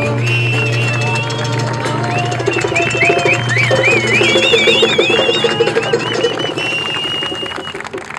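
A street band's last held chord ringing out and fading about halfway through, while the audience breaks into applause with cheers and whistles.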